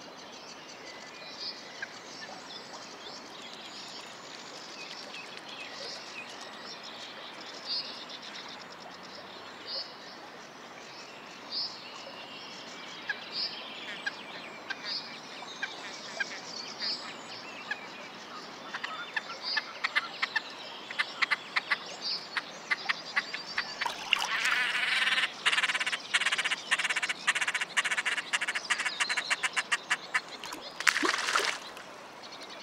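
Great crested grebes calling while mating on their floating nest. Short high calls repeat about every two seconds, then a rapid clicking starts and builds into a loud, fast rattling chatter as the male mounts the female.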